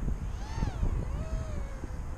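Micro quadcopter's Racerstar 1306 brushless motors whining, the pitch swooping up and then down with the throttle before settling into a longer, slowly falling tone, over wind rumble on the microphone.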